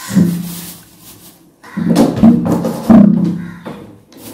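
A person's voice speaking in short stretches: a brief phrase at the start, then a longer run of talk from about two seconds in.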